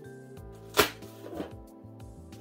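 Soft background music with held notes. A little under a second in comes a short, sharp sound of a cardboard book mailer being handled, and a softer one just after.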